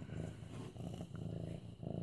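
Domestic kitten, about eight months old, purring steadily while being petted.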